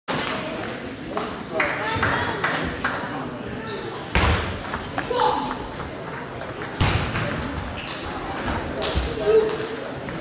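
Table tennis ball clicking off bats and the table during a rally, a run of sharp irregular ticks, over a murmur of voices echoing in a large sports hall.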